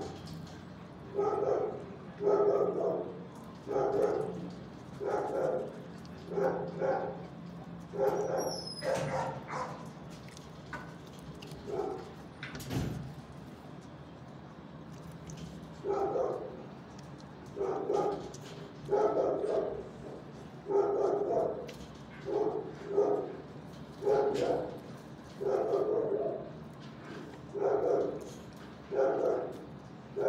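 A dog barking over and over, roughly one bark a second, with a pause of several seconds midway.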